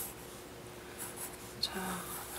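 Graphite pencil drawing on paper: a few short sketching strokes scratching lightly across the sheet.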